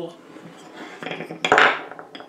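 Pieces of wood knocking and scraping on a tabletop as they are handled, with one louder clatter about one and a half seconds in.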